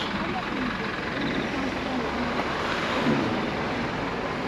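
Steady outdoor background noise with faint voices in it; a low rumble swells slightly around the middle.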